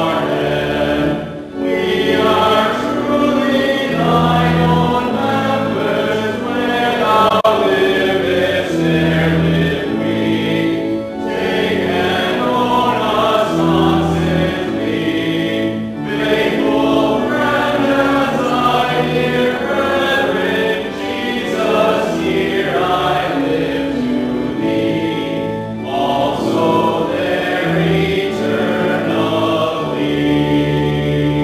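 A hymn sung by voices in line-long phrases over organ accompaniment, with short pauses between lines.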